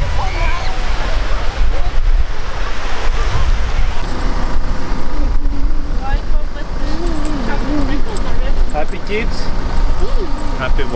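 Wind buffeting the microphone over the surf of the sea on a beach. About four seconds in, the wind noise eases and indistinct voices are heard over outdoor background noise.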